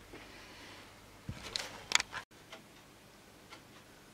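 Quiet room tone with a few faint, light clicks clustered around the middle.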